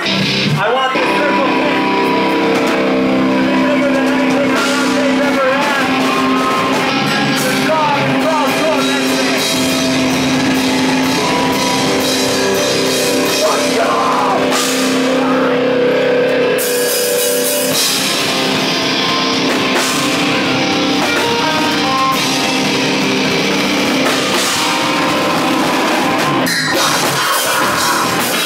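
Live heavy rock band playing loudly: distorted electric guitars, bass guitar and a drum kit pounding out a song, with a few abrupt breaks where the band stops and comes back in.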